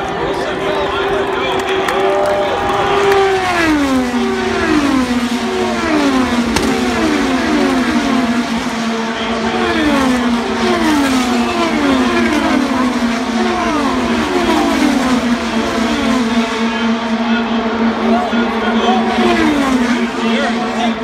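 IndyCars, with 2.2-litre twin-turbo V6 engines, running past at race speed one after another. Each engine's pitch drops as the car goes by, in a long run of many cars in a row.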